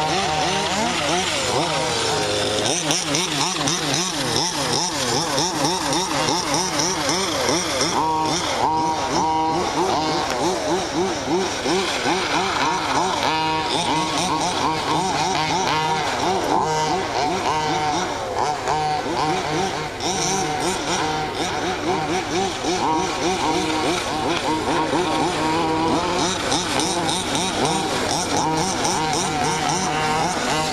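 Small two-stroke petrol engines of 1/5-scale RC cars running on the track, their pitch swinging up and down over and over as the throttle is worked, with more than one engine heard at once.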